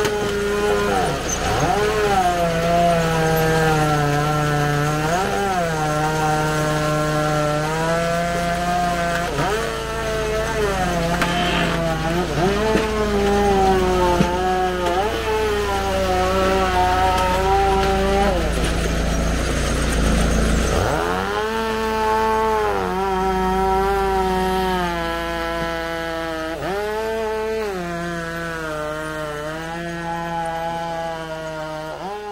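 Gas engine of a hydraulic wedge log splitter running hard. Its pitch drops as it loads down when the ram pushes rounds through the box wedge, then recovers, every few seconds. The longest and deepest dip comes about twenty seconds in.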